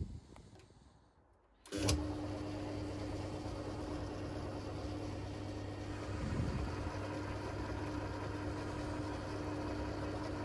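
Belt-driven metal lathe started up about two seconds in, then running steadily with a constant hum and tone from its motor and drive.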